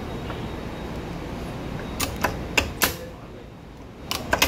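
Steady low outdoor background noise, then four sharp clicks in quick succession about halfway through.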